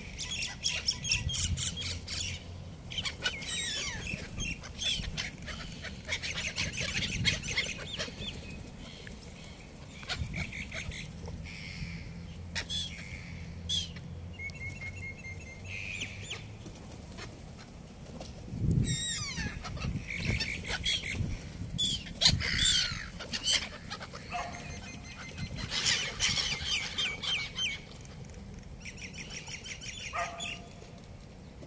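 A flock of gulls calling, bouts of short, repeated squawking cries from many birds at once, loudest a little past the middle.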